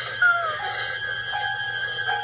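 Horror film soundtrack: a dark, sustained synthesizer score of held notes that break off and resume, with a brief falling tone just after the start.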